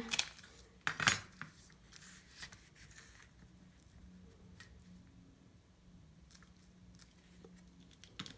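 Quiet handling sounds of a heated fuse tool and a metal ruler on a plastic cutting mat: a couple of sharp taps about a second in as they are set in place, then soft scattered ticks as the fuse tool is run along the ruler to seal a plastic shaker-tag sleeve.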